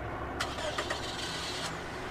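Car engine running with road noise, heard from a car commercial's soundtrack, with a few sharp clicks about half a second in.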